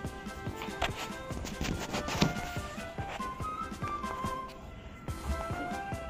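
Background music with sustained notes, with a couple of short knocks about one and two seconds in.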